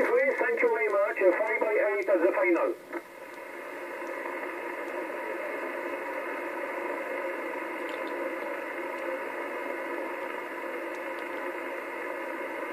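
Single-sideband voice received through a Kenwood TS-950 HF transceiver's speaker, narrow and radio-thin, for the first three seconds or so. It then stops and leaves the receiver's steady band hiss, with faint even tones in it, as the frequency goes quiet between transmissions.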